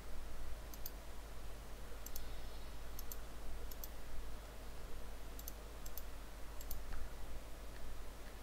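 About seven faint, sharp clicks at irregular intervals from someone working a computer's controls while stepping through a list on screen, over a steady low hum.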